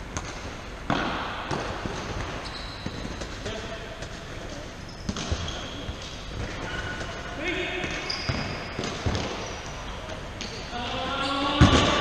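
Indoor five-a-side football in an echoing sports hall: sharp kicks and bounces of the ball on the wooden floor, with players calling out to each other, loudest near the end.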